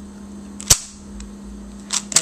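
A plastic DaYan LingYun V2 3x3 speed cube clicking sharply once, about a third of the way in, as a layer is turned and snaps into place, followed by a fainter tick, over a steady low hum.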